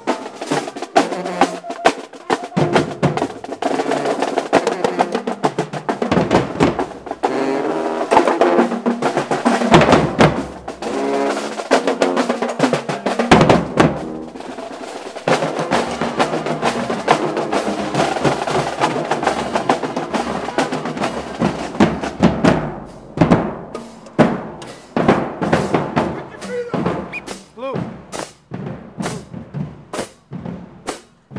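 Marching band playing: brass horns sounding a tune over snare drums and crash cymbals. About two-thirds of the way through, the horns stop and only scattered drum and cymbal hits remain.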